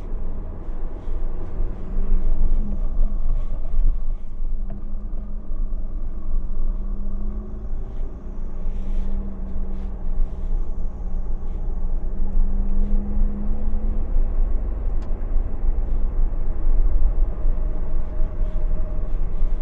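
Cabin sound of a 2022 Force Gurkha's diesel engine running steadily while it drives over a rough dirt track, under a heavy low rumble from the tyres and body on the bumpy surface, with a few faint brief rattles.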